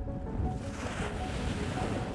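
Sea waves breaking and washing up on a beach, the surf swelling about half a second in, with soft background music underneath.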